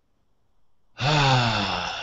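About a second in, a man lets out a long, breathy sigh that falls in pitch.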